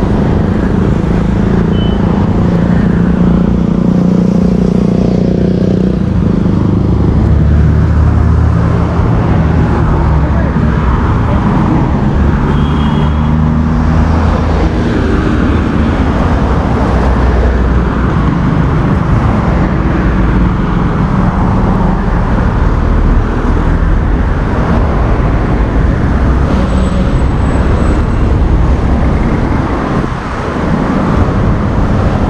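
Steady road traffic on a busy city avenue: car and van engines and tyres passing close by, their low hum swelling and fading as vehicles go past.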